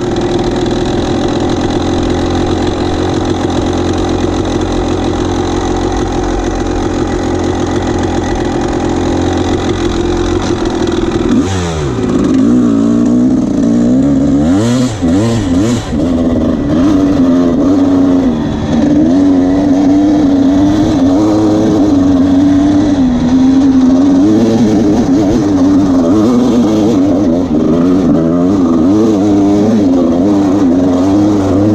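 Dirt bike engine running while the bike rides a rough trail. It holds a steady note for about eleven seconds, then its pitch drops and climbs and keeps wavering as the throttle is worked, louder for the rest.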